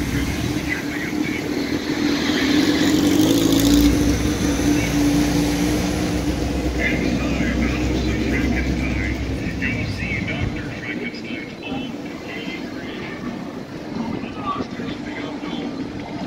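A motor vehicle passing on the street: a steady engine hum and low rumble that swells about three to four seconds in and fades out around ten seconds, with people talking nearby.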